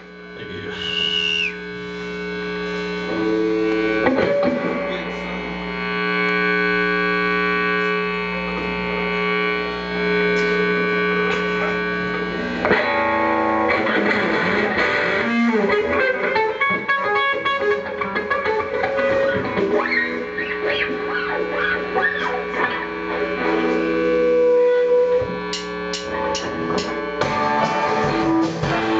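Live garage-punk band playing amplified in a small club: electric guitar over long held keyboard chords, swelling up over the first few seconds, with sharp percussive clicks near the end.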